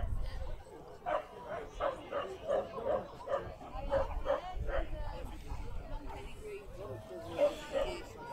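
A dog barking repeatedly in the background, about two barks a second, which stops about five seconds in.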